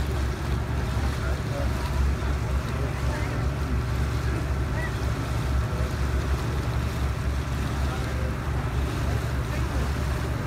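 Steady low rumble of a boat under way on a lake, with water washing and wind on the microphone.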